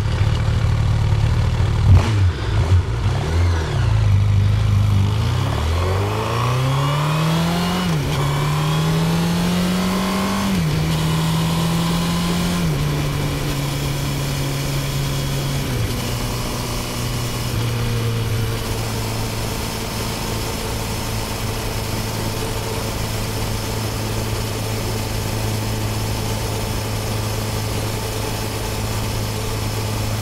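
Honda CB1000R's inline-four engine heard from the bike as it pulls away. The revs climb and drop back through several upshifts in the first half, then the engine holds steady revs while cruising.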